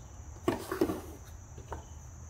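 Wooden board being set down flat on a workbench and shifted into place: a short cluster of wooden knocks and scraping about half a second in, then a light tap near the end.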